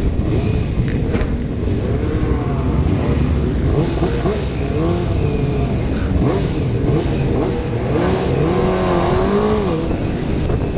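Sport motorcycle engines running in a group ride, their pitch repeatedly rising and falling as they are revved, over a dense low rumble; the longest rev is near the end.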